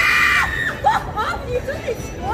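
A young woman screaming in fright at being jumped out at. One loud, high scream breaks off about two-thirds of a second in and is followed by a string of short, high laughing cries.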